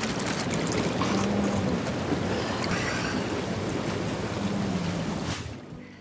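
Hot tub jets running, a steady rush of churning water, which stops near the end.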